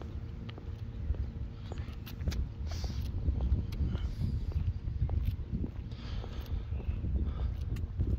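Footsteps on a paved path, irregular short knocks, over a steady low rumble.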